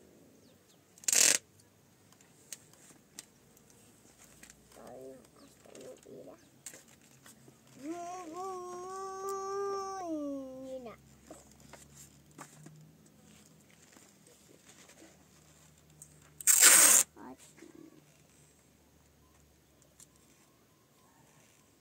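A roll of clear adhesive tape pulled off with a loud rip, once briefly about a second in and again, longer, near the end. In between, a high voice holds one drawn-out note for about three seconds.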